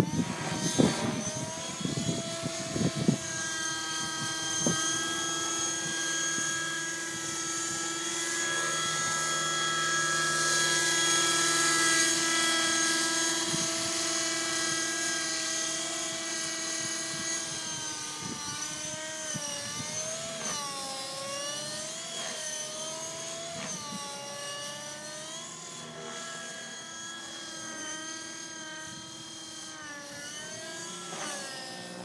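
Align T-Rex 600N radio-controlled helicopter in flight: its two-stroke nitro glow engine and rotors give a steady whine that swells to a peak near the middle and then slowly fades. In the second half the pitch swings repeatedly up and down as it manoeuvres. A few knocks sound in the first three seconds.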